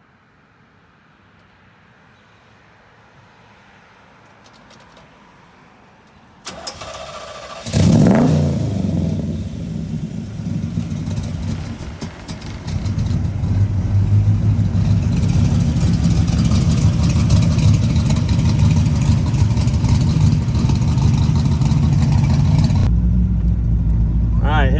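A 1974 Chevrolet Corvette's V8 cranked by the starter about six and a half seconds in, catching with a sharp rev a second later. It then settles into a loud, steady run through its side-exit exhaust pipes.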